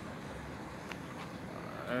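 Steady road and engine noise heard from inside a slowly moving car, with a faint tick about a second in.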